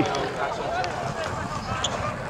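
Quieter background talk: voices speaking at a lower level than the main speaker, with no other clear sound.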